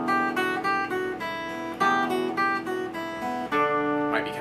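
Steel-string acoustic guitar picking a short single-note lick on the treble strings over a ringing open low E bass note, with fresh attacks about two seconds in and again near the end. This is the E minor intro lick with the bass added: fretted and open notes on the high E string, then the B string.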